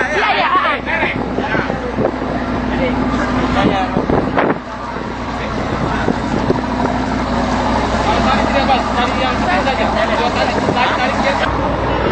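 People talking on a ship's deck over the steady hum of the ship's machinery.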